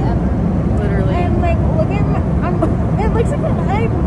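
Steady low drone of an airliner cabin, with voices talking over it whose words can't be made out.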